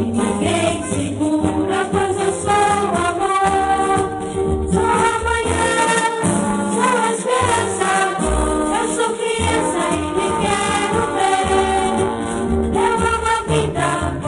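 Music: a choir singing over instrumental accompaniment with light percussion.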